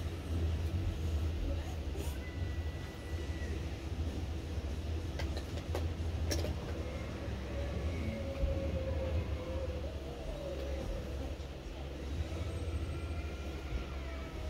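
A steady low rumble of background noise, with a few light clicks and knocks about halfway through, and faint wavering tones in the second half.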